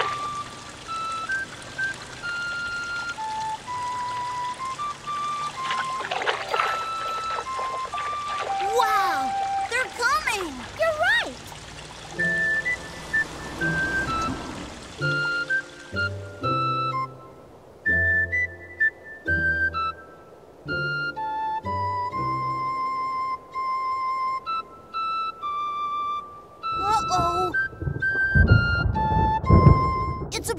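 Ocarina playing a slow melody of clear single notes over splashing fountain water. About halfway in the water stops and backing music with a bass line joins the tune.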